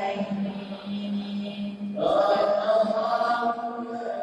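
A group of men's voices chanting together in unison, holding a low note at first, then entering a louder, higher phrase about two seconds in.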